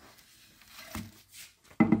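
Faint handling noise as a slate tile placemat is moved over plastic cling film: soft rustles and a light knock about halfway through.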